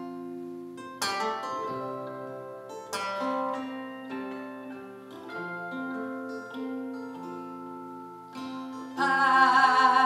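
Live string band playing an instrumental passage: sharply plucked notes ring out over sustained melody lines from guitars and mandolin. Near the end a louder line with a wavering pitch comes in.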